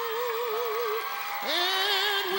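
Male singer performing live over band accompaniment: a long held note with wide vibrato breaks off about a second in, then he scoops up into a new sustained note.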